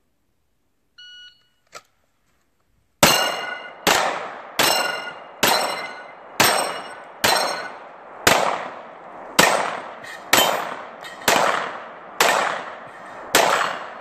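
An electronic shot-timer start beep, then about two seconds later a string of twelve pistol shots, roughly one per second. Steel targets ring after the hits.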